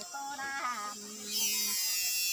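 Unaccompanied folk singing by one voice, with long level held notes between short gliding phrases. About a second and a half in, a steady high buzz sets in behind the voice.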